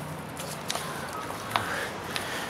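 A hand squelching and squeezing through thick wet paste in a metal tray, with a couple of short wet smacks about a third of the way in and near the end. A faint steady low hum runs underneath.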